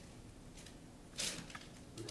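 Cherry-blossom Java sparrow giving a single short, sharp chirp a little over a second in.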